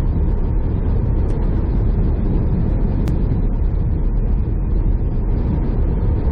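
Semi truck cruising on a highway, heard from the cab: a steady low rumble of engine and road noise, with one brief click about halfway through.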